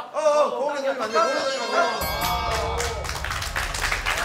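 Men's voices shouting, then about halfway through a small group starts clapping over background music as the sparring round ends.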